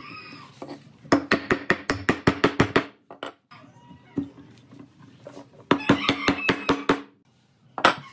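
Two runs of quick hammer taps, about six a second, on a pine bench leg as its glued tenon is driven home into the mortise. Each blow rings briefly.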